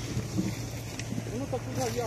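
Outdoor background noise with wind on the microphone and a steady low hum; in the second half a faint voice is heard.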